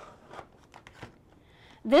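Spools of ribbon handled and set down on a cutting mat: a few faint light knocks and rustles.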